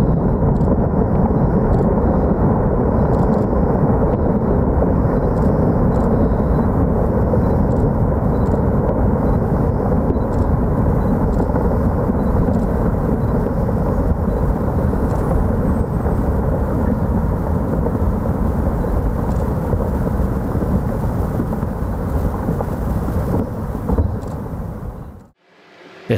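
Deep, steady rumble of a huge rockfall, a mass of rock and debris cascading down a steep cliff face after a controlled demolition blast. It fades and drops away sharply near the end.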